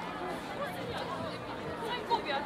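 Crowd chatter: many people talking at once, their voices overlapping into a general babble with no single clear speaker.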